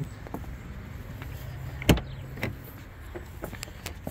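2020 Nissan Sentra's driver's door latch clicking as the door is opened: one sharp click about two seconds in, then a softer click about half a second later.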